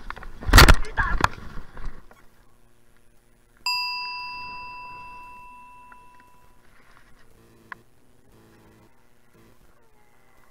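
A mountain bike going down on a dirt trail: a burst of loud scraping and thumps in the first two seconds. About two seconds later comes a single bell-like ding, most likely the handlebar bicycle bell struck once, ringing out and fading over about three seconds.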